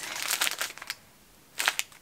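Paper bag crinkling as it is handled and a wrapped package is taken out of it, for about a second, then one short rustle near the end.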